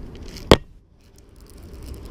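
A single sharp click from a baitcasting reel being handled about half a second in, then a low, steady rumble.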